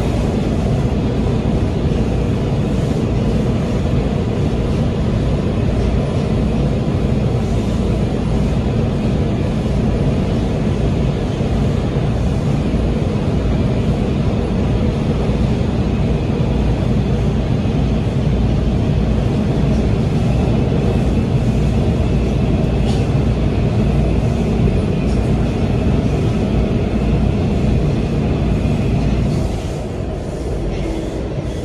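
Breda 2000 Series Metrorail car running at speed through a tunnel, heard from inside the car: a steady, loud rumble of wheels on rail and running gear. A faint high whine joins in near the end.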